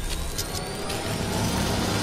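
Cinematic riser sound effect for an animated logo sting: a dense rumble with a thin whine climbing slowly in pitch.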